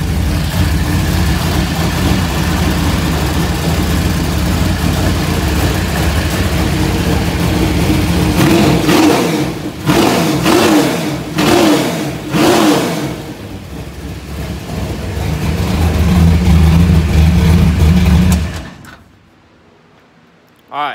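Carbureted race car engine idling hot, blipped by hand at the throttle four times about halfway through with short rising revs, then running on steadily before it is switched off and stops abruptly near the end. It is being run up to operating temperature so the thermostat opens and air bleeds out of the cooling system.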